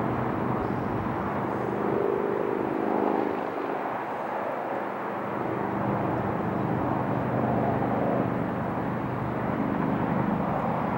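A steady engine drone with a low, layered hum that swells and fades a little.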